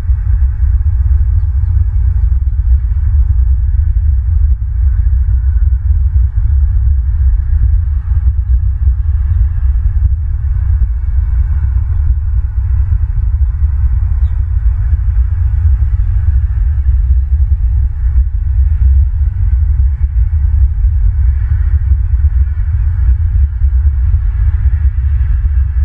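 Wind buffeting an outdoor camera microphone: a steady, heavy low rumble that flutters continuously, with a faint hiss above it.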